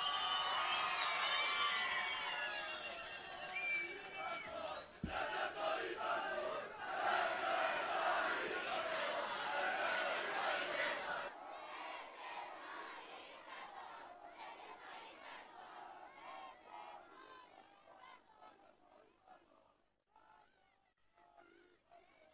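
A large outdoor crowd shouting and cheering, many voices at once. It is loud for about the first eleven seconds, then drops off suddenly and fades away toward the end.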